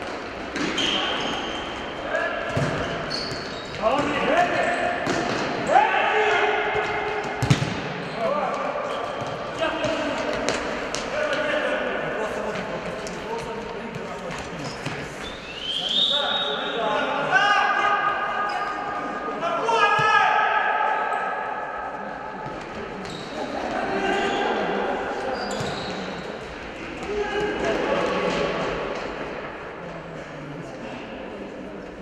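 Futsal ball being kicked and bouncing on a hard indoor court, with several sharp knocks. Players shout and call to each other throughout, with the hall's echo.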